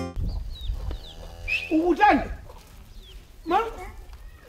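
Farmyard sounds: small birds chirping with short falling notes, and a loud call that rises and falls in pitch about two seconds in, with a shorter call near the end.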